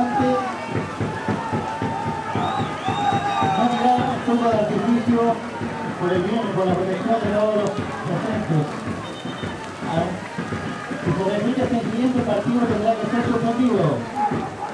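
A voice making an announcement over the stadium's public-address loudspeakers, talking continuously.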